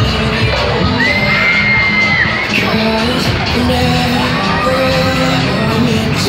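Loud fairground ride music with singing, over crowd noise with shouts and whoops from people on and around the swinging ride. One long high note holds for about a second, starting a second in.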